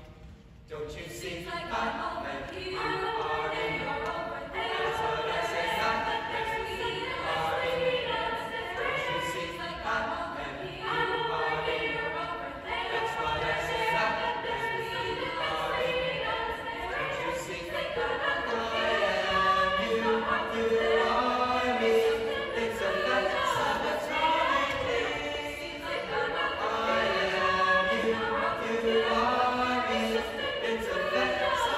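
Mixed choir of teenage voices singing together, starting about a second in and carrying on steadily.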